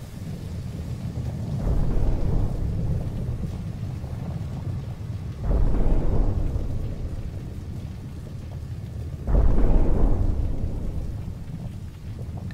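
Deep rumbling of a huge explosion and the fire after it, an anime sound effect, swelling up suddenly three times about four seconds apart and fading between.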